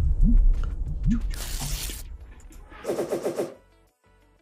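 Pack-opening sound effect from the Funko NFT website: a deep rumble with rising swoops, a burst of hiss about a second and a half in, then a short warbling tone around three seconds in.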